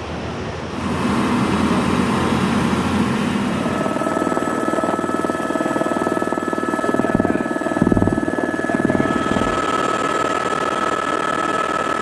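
Helicopter in flight: a steady turbine whine over the rotor's rapid beat. It grows louder about a second in, and the whine becomes clearer from about four seconds in.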